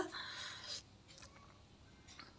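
Faint sounds of a wooden rolling pin rolling dough out on a floured rolling board: a soft swish for about the first second, then a few light clicks.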